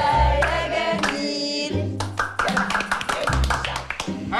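Upbeat music with a group singing over a deep bass line. Rhythmic hand-clapping joins in from about two seconds in.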